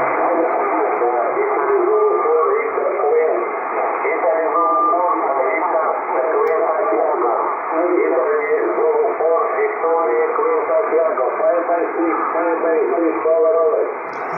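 A distant amateur station's voice heard over single-sideband through an HF transceiver's loudspeaker: thin, narrow-band speech with no low or high end, which runs on without a break.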